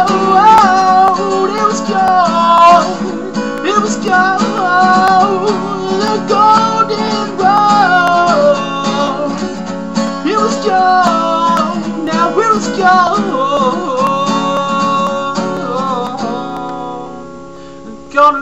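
Steel-string acoustic guitar strummed with a capo on, with a man's voice singing over it in places. The playing gets quieter near the end.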